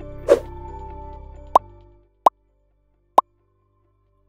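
Logo-sting sound design: held music tones fading out about two seconds in, a short whoosh near the start, then three short sharp pops spaced about a second apart.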